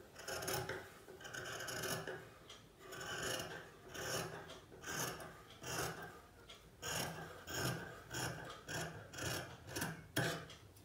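Large tailoring shears cutting through cloth on a table: a run of rasping snips as the blades close through the fabric, irregular at first and coming closer together, about two a second, in the second half.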